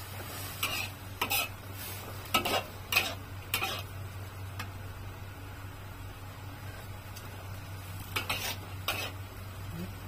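A metal spatula scraping and clanking in a steel wok as rice vermicelli is stir-fried: a run of strokes in the first four seconds, a pause, then a couple more near the end, over a steady low hum.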